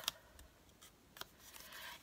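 Cardstock being folded in half and creased by hand: a few faint paper clicks and a light rustle.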